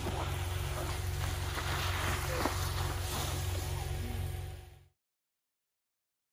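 Water spraying from a garden hose onto a wet artificial-turf slope as a child slides down it on a board, with splashing over a steady low hum. The sound cuts off suddenly about five seconds in.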